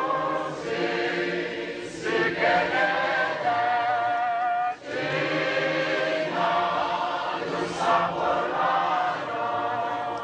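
Many voices singing together in a choir, in long held phrases with a brief break a little before halfway.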